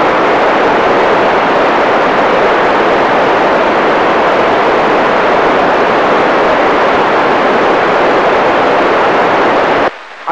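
Loud, steady rushing noise with no tone in it, holding level throughout, then cutting off suddenly near the end.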